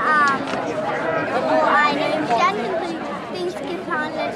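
Several people talking at once, their voices overlapping in chatter, with no words clearly made out.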